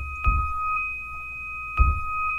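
Waldorf Blofeld synthesizer holding two steady, pure high tones an octave apart, with no FM between its oscillators. Two short low thumps land over them, one just after the start and a louder one near the end.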